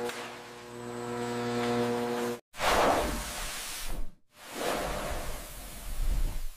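Added machine sound effects: a steady hum at several pitches under a swelling hiss, cut off abruptly after about two and a half seconds. Then come two whooshing rushes of hiss, each after a brief dropout.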